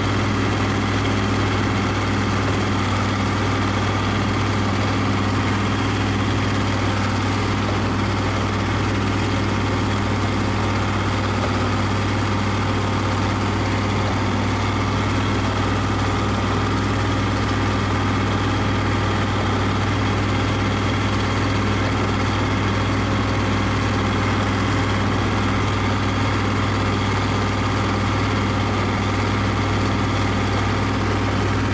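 A heavy diesel engine idling steadily, with an even low hum that does not change.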